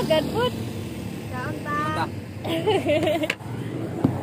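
A road vehicle's engine running past, a steady low rumble under short bursts of people talking.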